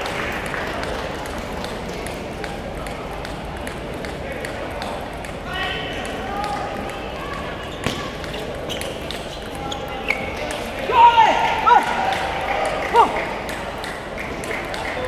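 Table tennis ball clicking off bats and table during a rally, with more ball clicks and voices from the busy hall around it. Near the end, a few loud shouts ring out as the point is won.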